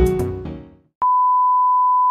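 Intro music fading out, then about a second in a single steady beep at the 1 kHz reference pitch starts: the test tone of a colour-bars countdown leader.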